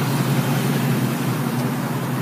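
Steady low hum: a constant drone with an even background noise over it, unchanging throughout.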